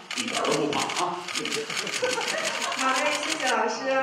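Rapid camera shutter clicks from press cameras, about eight a second, stopping about three and a half seconds in, with voices talking underneath.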